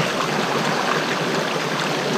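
Mountain stream water running over rocks, a small cascade pouring between boulders into a pool, with a steady rushing sound.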